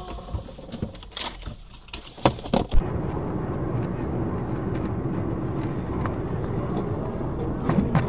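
A few sharp clicks and knocks in the first three seconds, the loudest two about two and a half seconds in. Then steady road and engine noise of a car driving at speed, heard from inside the cabin, with another knock near the end.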